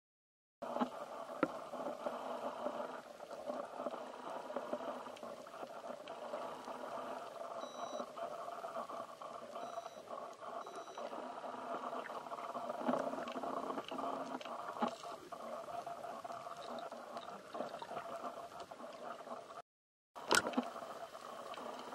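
Muffled underwater noise picked up by a camera submerged among the rays, a dense, steady rumbling hiss scattered with small clicks and crackles. Three faint short high beeps sound between about eight and eleven seconds in. The sound starts after a moment of silence and cuts off abruptly just before the end.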